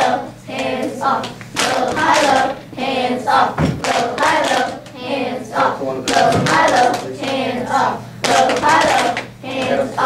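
Voices chanting a rhythmic 'low, high, low, hands up' pattern over steady hand pats: a body-percussion drum exercise, with low pats on the knees and high pats on the chest. Two deeper thumps come through about four and six seconds in.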